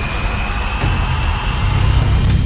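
Intro logo-reveal sound effect: a loud rushing whoosh with a thin tone rising slowly through it and a deep rumble underneath, laid over intro music.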